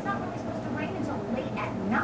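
A woman speaking, heard through a television's speaker.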